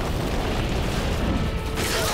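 Cartoon earthquake sound effect: a continuous loud, deep rumble with crashing noise, swelling to a brighter crash or whoosh near the end.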